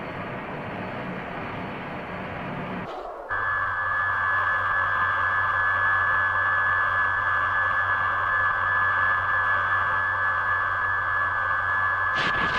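Electronic science-fiction sound effect from a 1960s tokusatsu soundtrack: about three seconds of rushing hiss, then a steady high electronic tone over a low hum that holds to the end.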